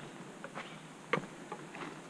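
Hiker's footsteps on a dirt forest trail with leaf litter: irregular crunching steps, the sharpest about a second in.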